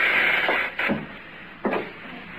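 Radio-drama sound effect of a door being shut: a rushing scrape of the door swinging, then a knock about a second in and a lighter one near the end.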